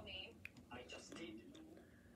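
Faint, whisper-like speech, low in level.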